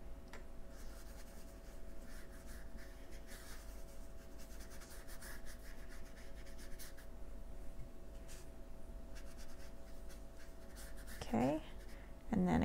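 Watercolor brush stroking on watercolor paper, a soft irregular brushing with small taps, over a faint steady hum.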